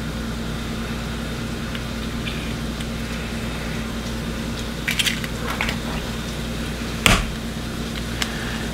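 Eggshells being handled, with a few small clicks about five seconds in, then one sharp crack about seven seconds in as a hen's egg is cracked against the bowl. A steady low hum runs underneath.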